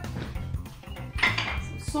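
Scattered clinks and knocks of jars, bottles and grinders being moved on a kitchen counter, over a steady background of funk music.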